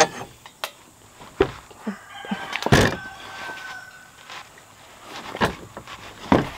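Scattered clicks and knocks of a plastic-and-metal shooting rest being handled and adjusted under an air rifle, with one louder knock near the middle and a faint thin squeak-like tone for about two seconds around it.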